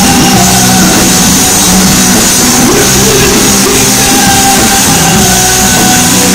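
Live rock band playing loudly, with drums and held guitar and bass notes that change every second or so.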